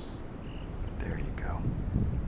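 The end of a song sparrow's song: a buzzy note and a few thin high notes in the first half second, closing a phrase that opened with repeated clear notes. Then wind noise on the microphone grows louder.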